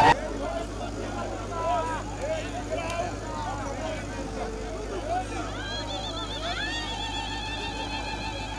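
Small road roller's diesel engine idling steadily, a low even hum, under crowd voices; wavering sung or called voices join in from about six seconds in.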